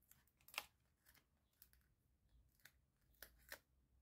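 Faint scattered crinkles and clicks of foam adhesive dimensionals being peeled off their plastic backing sheet and pressed onto a cardstock panel, with a handful of sharper ticks.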